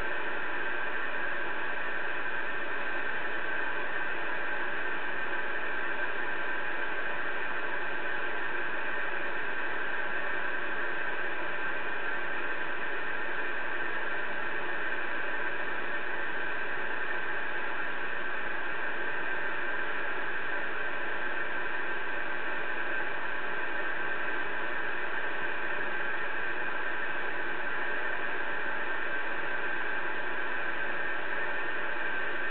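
Steady static hiss from a Connex CX-3400HP CB radio's speaker, with no station coming through.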